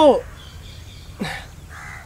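A crow cawing faintly near the end, a single short raspy call, after a man's voice trails off.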